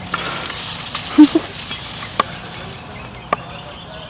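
A cast iron geocache container on a rope being lowered out of a tree, with a steady rustling hiss of rope and branches and a few sharp clicks and knocks. Two short, low, loud bumps come a little over a second in.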